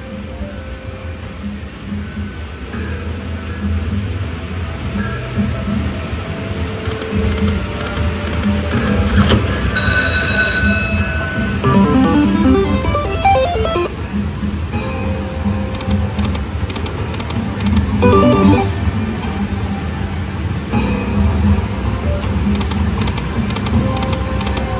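Video slot machine playing its free-games bonus sounds: a looping music bed with bright chime jingles as the reels stop and small wins add up, the clearest jingle about ten seconds in, over a steady low hum.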